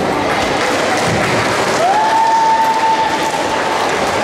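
Audience applauding in a large sports hall. About two seconds in, one long high note from the crowd rises and then holds for about a second and a half over the clapping.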